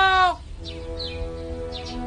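A long drawn-out spoken call ends about a third of a second in, and the level drops. Soft background music follows, with held chord notes and a few short, high, falling chirps over them.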